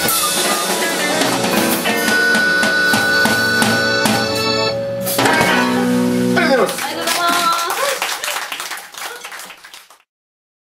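Live band with electric guitars and drum kit playing the last bars of a song, closing on a held chord that stops about six and a half seconds in; voices follow as the sound dies away.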